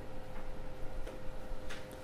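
Pause in speech: low room noise with a faint steady hum and a light click about halfway through.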